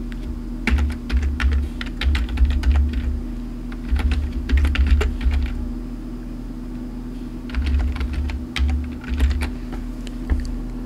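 Typing on a computer keyboard: three runs of quick keystrokes with short pauses between them.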